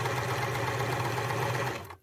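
Electric sewing machine running steadily as it stitches a seam, then stopping near the end.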